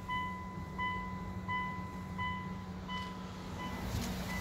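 Mitsubishi Pajero dashboard warning chime beeping repeatedly at an even pace, about three short beeps every two seconds, over a steady low hum.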